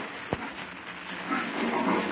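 Steady hiss and surface noise of an old radio transcription recording, with a single sharp click about a third of a second in. Voices start again near the end.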